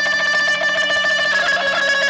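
Instrumental mugham interlude from a live band: a long held high melodic note with fast wavering ornaments over a steady low drone note, with no singing.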